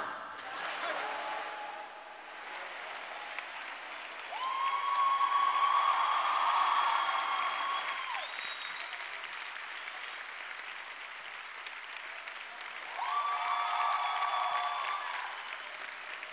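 Large audience applauding, the applause swelling louder twice: about four seconds in and again near the end.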